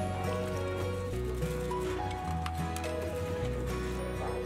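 Background music: sustained melodic notes over a bass line that changes pitch every couple of seconds, with light percussive ticks.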